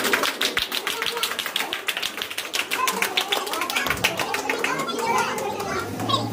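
A small group of people clapping by hand, with voices chattering underneath; the clapping thins out near the end.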